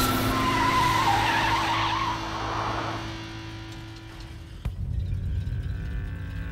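Cartoon sound effect of a car's tyres screeching as it brakes hard, fading away over the first few seconds. Then a sharp click and a low engine hum.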